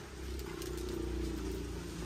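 Eggs clicking faintly as they are picked up and set one by one into a wicker basket, over a steady low hum.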